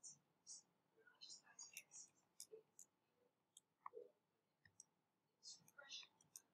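Faint, irregular clicks of calculator keys being pressed while the area is worked out; otherwise near silence.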